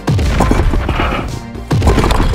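Cartoon cannon sound effects over background music: a boom just after the start and another about 1.7 s in, each followed by a clatter of blocks breaking out of a wall.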